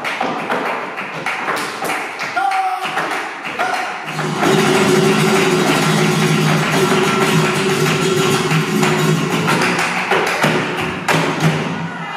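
Live flamenco: a dancer's rapid heel-and-toe footwork (zapateado) and hand-clapping (palmas) over flamenco guitar. About four seconds in it turns louder and denser, with steady strummed chords under the strikes, easing briefly near the end before more stamps.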